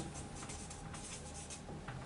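Marker pen writing on a paper flip chart: a run of faint, short strokes.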